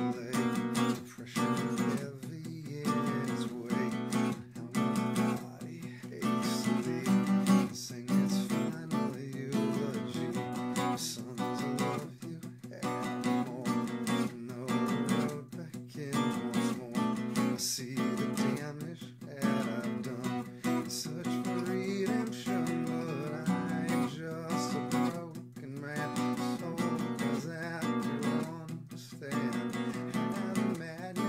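Two acoustic guitars playing chords together in a steady rhythm, the instrumental intro of a song with no vocals yet.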